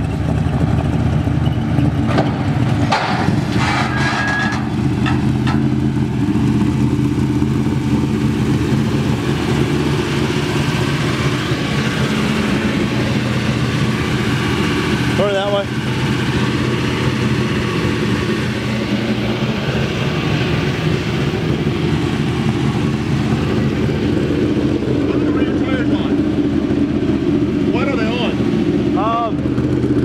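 Race car engine idling steadily as the car is driven slowly up wooden ramp boards onto a trailer. Voices break in briefly around the middle and again near the end.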